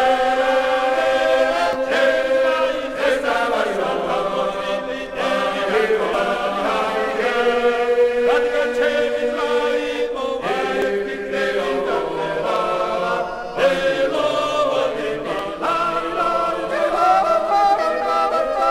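Male folk ensemble singing Gurian polyphony unaccompanied, several voice parts held together in sustained, shifting chords, played from a vinyl record. The phrases break off briefly about ten and thirteen seconds in before the voices come back in together.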